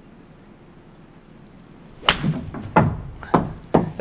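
A 7-iron swung into a Vice Pro Soft golf ball off an artificial-turf hitting mat: one sharp club-on-ball strike about two seconds in, followed by three lighter knocks coming closer together.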